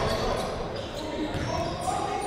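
Basketball bouncing on a hardwood gym floor as it is dribbled up the court, heard in a large gym hall, with indistinct voices in the background.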